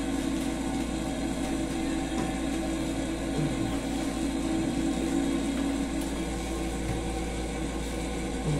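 A steady mechanical hum that holds unchanged throughout.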